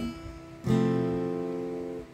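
A single strum of an F chord in its easier non-barre form on a Fender cutaway acoustic guitar, about two-thirds of a second in, left to ring and slowly fade. Before it, the last notes of the previous sound die away.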